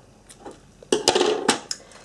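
Small craft scissors snipping clear elastic beading cord: a few sharp clicks, the loudest about a second in.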